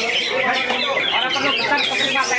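Green leafbird (cucak hijau) singing: a dense, unbroken run of rapid whistled and chattering notes, with people's voices underneath.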